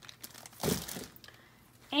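Plastic produce bag crinkling in one short burst about half a second in, as groceries are handled.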